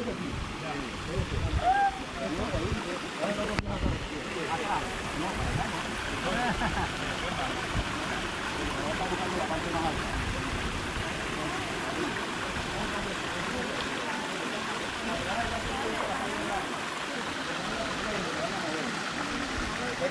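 Steady rushing of water among rocks on a seashore, with people's voices talking indistinctly now and then.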